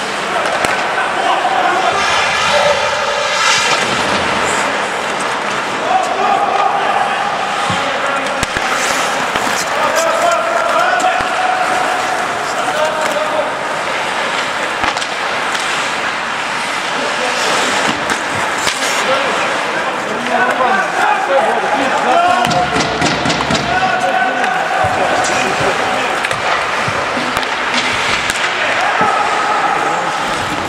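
Ice hockey play in a rink: voices of players and onlookers calling out throughout, with frequent sharp clacks of sticks and puck.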